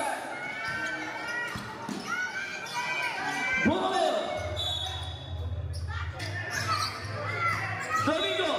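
A basketball bouncing on a court floor while spectators shout and talk, echoing in a large hall. A steady low hum with a thin high tone comes in about halfway through.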